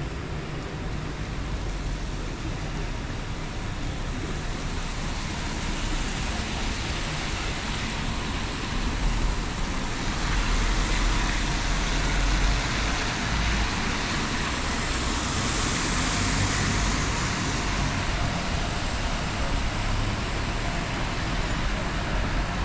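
City street traffic on a wet road: cars and a van passing, their tyres hissing on the rain-soaked surface, swelling louder through the middle.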